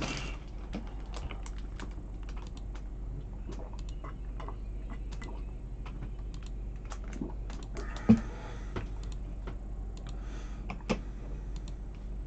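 Computer mouse clicking repeatedly at an irregular pace, re-running a web list randomizer over and over. About eight seconds in there is a single louder thump.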